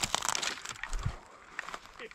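Footsteps crunching through dry grass and sagebrush, with a dense crackle of brittle stems and a low thump about a second in.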